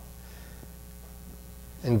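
Steady low electrical hum, mains hum in the sound system, heard in a pause between words. A man's voice comes back near the end.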